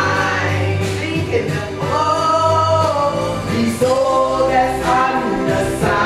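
A woman singing live into a handheld microphone over musical accompaniment, holding long notes with vibrato.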